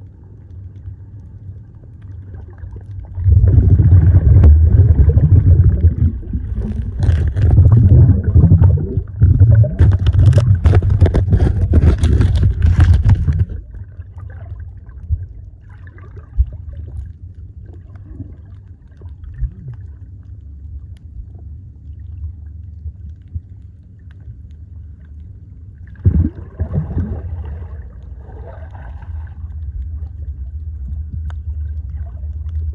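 Muffled underwater sound through a camera's waterproof housing: a steady low rumble. From about three to thirteen seconds in there is a loud stretch of bubbling, splashing and crackling as a snorkeler in a full-face mask moves close to the camera, and a shorter burst comes near the end.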